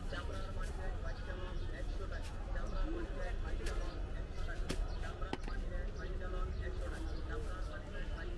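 People talking around a street food stall over a constant low street rumble, with two sharp clicks about halfway through, under a second apart.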